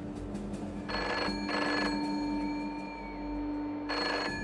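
Telephone ringing in the British double-ring pattern: two short rings about a second in, a pause, then the next pair starting at the end, over a steady low hum.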